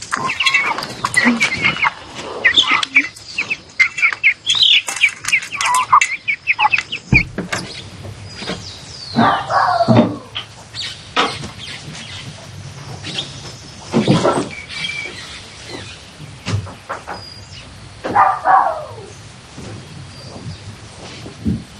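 Birds chirping rapidly in a rural yard for about seven seconds. The chirping stops suddenly, leaving a quieter background broken by a few short pitched sounds.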